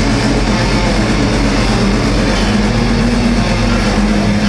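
Live heavy metal band playing a loud, continuous section with distorted electric guitars, bass and drums, centred on a held low chord. It is heard through a lo-fi camcorder microphone.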